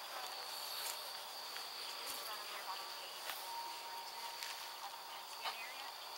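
A steady, high-pitched chorus of night insects, with a few faint, sharp knocks in the background at irregular intervals.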